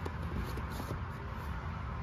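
Faint handling sounds of a small cardboard tea box being pushed into its slot in a cardboard advent calendar, with a few light taps, over a steady low background hum.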